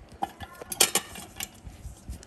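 Small metal extraction instruments clicking and clinking as they are handled. Several sharp clicks, bunched and loudest about a second in, with a few scattered ones before and after.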